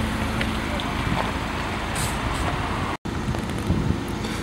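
Steady outdoor background noise with a low rumble and no distinct events, dropping out for an instant about three seconds in.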